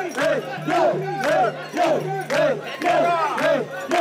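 Mikoshi bearers shouting a rhythmic carrying chant in unison while shouldering the portable shrine, about three shouts a second.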